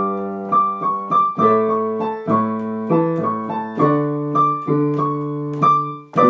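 Solo piano playing held chords under a line of struck notes, new notes coming about every half second.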